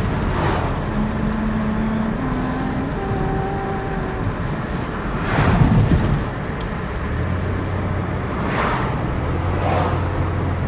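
Steady road and engine noise inside a moving car's cabin, with the rushing sound of oncoming vehicles going past three times, the loudest about five and a half seconds in.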